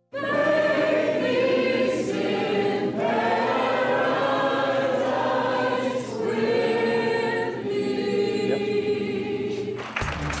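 A woman singing grace solo, in long held notes, with short breaks between phrases.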